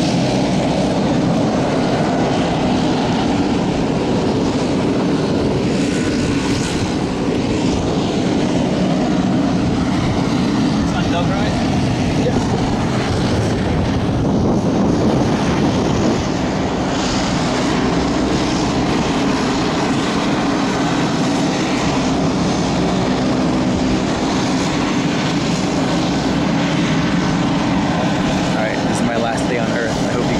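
Steady drone of a propeller aircraft's piston engine running on the airport ramp, with muffled voices under it.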